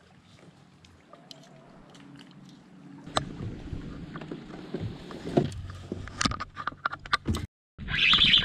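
A boat's motor hums steadily, fading in over the first few seconds. Knocks and clatter come through over it in the last few seconds, and the sound cuts out abruptly just before the end.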